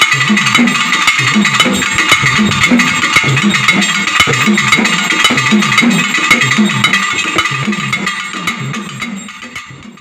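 Pambai, the Tamil twin cylindrical drums, played in a steady rhythm, each low stroke sliding down in pitch. The playing fades out over the last few seconds.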